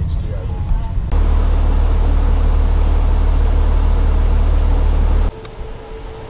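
Steady rumble of a school bus's engine and road noise heard from inside the moving bus, loud and low. It starts abruptly about a second in and cuts off about a second before the end.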